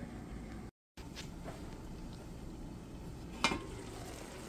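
Low steady hiss of a covered pan simmering on the stove, broken by a short gap of silence near the start. About three and a half seconds in comes one sharp metallic clink as the stainless-steel lid is lifted off the pan.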